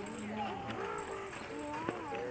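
Several people's voices talking indistinctly, with a couple of faint knocks.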